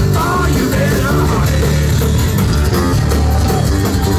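Live rock band playing loudly: acoustic and electric guitars with bass guitar, and a sung vocal line near the start.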